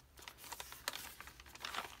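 Paper pages of a handmade journal being turned by hand: soft rustling with a few short crinkles and light taps as the pages flip over.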